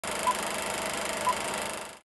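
Film countdown leader sound effect: a steady crackling, hissing film-projector noise with two short high beeps about a second apart, one on each passing number, then it cuts off.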